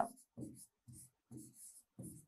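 Stylus writing letters on an interactive whiteboard screen: a series of short, faint strokes, about two a second.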